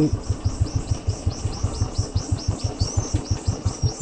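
Royal Enfield motorcycle engine running at low revs while the bike rolls slowly over a dirt track, an even thump of about eight to nine beats a second.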